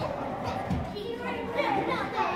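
Young children playing, several voices calling out and chattering over one another.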